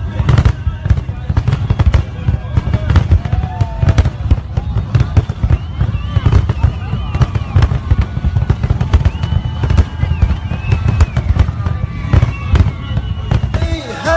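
Fireworks display: a rapid, continuous run of bangs and crackles with a heavy low rumble, amid crowd voices.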